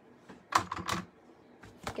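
Light clicks and taps of clear acrylic stamping blocks and a plastic stamp case being handled and moved aside, a quick cluster of taps about half a second to a second in and a single sharper click near the end.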